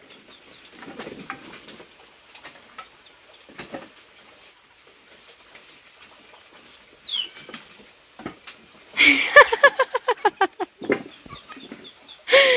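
A chicken clucking in a quick, loud run of repeated calls about nine seconds in, after faint scattered farmyard sounds and a short falling bird call.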